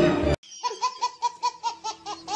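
A brief snatch of party-room voices and music cuts off about a third of a second in, then a baby laughs hard in a rapid, steady string of high-pitched laughs, about seven a second.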